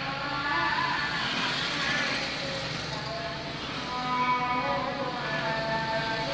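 Steady noise inside a car's cabin, with a person's voice heard now and then.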